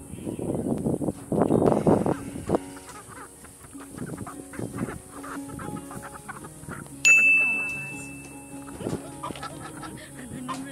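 Young Splash Ameraucana chickens fussing as they are set down, loudest in the first two and a half seconds, over background music. A sharp bell-like ping rings out about seven seconds in and fades over a second or so.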